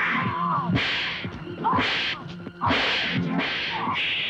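Fight-scene soundtrack of an old Hindi action film: background score with three loud swishing bursts of noise, about a second apart, and short gliding tones between them.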